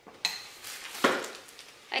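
Grocery packages being handled on a kitchen counter: a package is put down and a plastic-bagged one picked up. There are two sudden clattering, rustling noises, about a quarter second in and about a second in.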